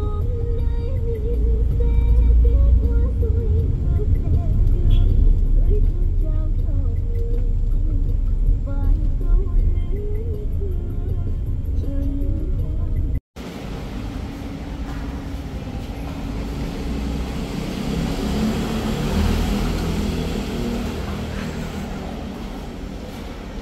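Low, steady rumble of a van's engine and tyres heard from inside the cabin while driving. About thirteen seconds in it cuts abruptly to a hissing, echoey ambience of a large parking garage.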